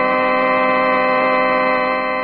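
Organ holding one loud, steady chord, a musical bridge in a radio drama.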